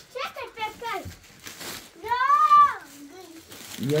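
Young children's high-pitched voices: short calls in the first second, then one long call that rises and falls about two seconds in, the loudest sound. A brief rustle of plastic bags and packaging comes in between.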